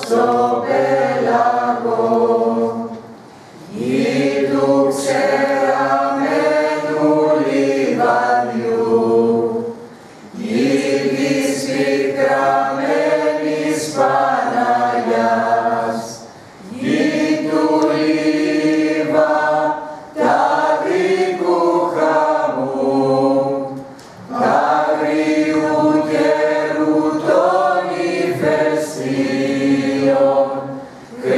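Small mixed choir of men's and women's voices singing unaccompanied from song sheets, in long phrases broken by short pauses for breath every few seconds.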